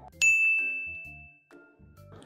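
A single bright ding: one clear bell-like tone that strikes just after the start and fades away over about a second, used as an editing chime between interview questions.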